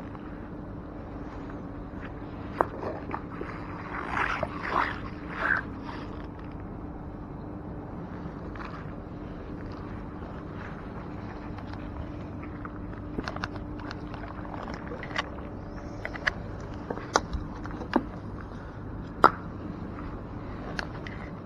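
Magnet-fishing rope being hauled in hand over hand through rubber gloves, with a cluster of rope scrapes about four seconds in and scattered sharp knocks in the second half, the loudest near the end. A steady low hum runs underneath.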